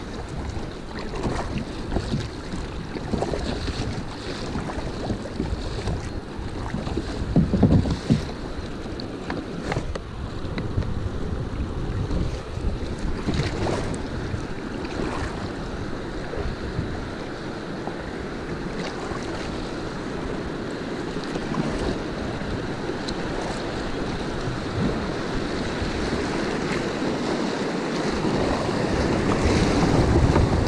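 Fast river current rushing and splashing around a kayak running a riffle, with wind buffeting the microphone. It swells briefly about seven seconds in and grows louder near the end as the boat drops into white water.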